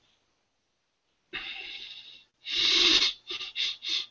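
A man breathing heavily: one long breath, a louder one after it, then a few short, quick breaths near the end.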